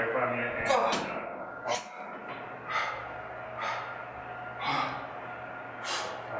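Heavy, rapid breathing of a man recovering from an exhausting high-intensity strength set taken to failure: hard, noisy breaths about once a second.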